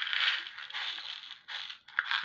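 Seed beads pouring out of a small plastic box onto a tabletop: a dense rattling hiss of many small beads. It breaks off briefly near the end.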